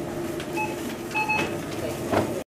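Checkout barcode scanner beeping: a short beep, then a longer double beep about half a second later, over steady store hum, background voices and the knock of groceries.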